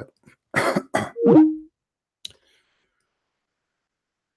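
A man's short breathy laugh about half a second in, ending in a brief falling-then-level tone, followed by a faint click and then near silence.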